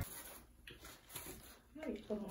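Quiet small-room sound with a few faint short noises, and a faint voice starting near the end.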